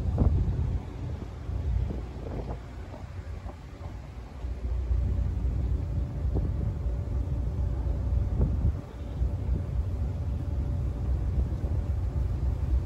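Drift ice cracking and knocking against the hull of the Garinko-go III icebreaking boat as it pushes through the pack. A few separate cracks and thuds stand over a steady low rumble, with wind on the microphone.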